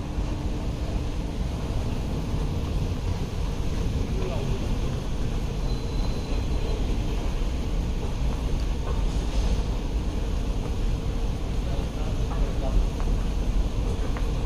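Steady low rumble of an airport terminal's indoor background noise beside moving walkways, with faint voices in the distance.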